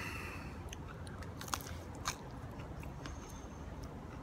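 A person biting into and chewing a piece of bolani, a deep-fried Afghan potato pastry, close to the microphone: a bite at the start, then wet mouth sounds with scattered short clicks.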